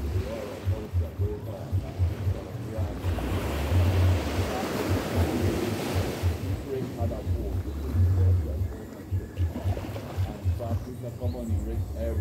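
Small sea waves lapping on a sand beach, one wave swelling up the shore and washing back between about three and six and a half seconds in, over a low gusty rumble of wind on the microphone.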